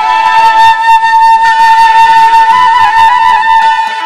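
Instrumental break in a Nagpuri folk song: a flute melody holding one long high note for most of the stretch, with a light percussion beat behind it.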